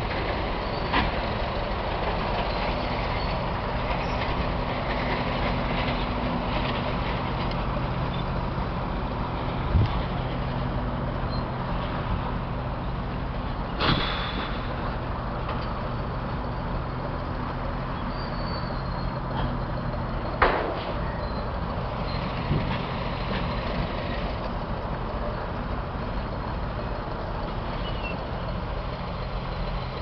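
Heavy earthmoving machinery engines running steadily, a continuous low drone, with a few sharp knocks standing out.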